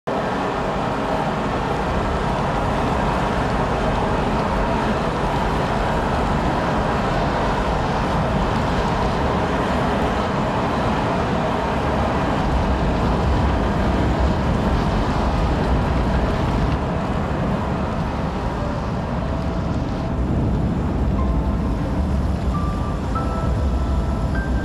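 Loud, steady rumbling noise with a strong low end and no clear rhythm. A few faint held tones, each a little higher than the last, come in near the end.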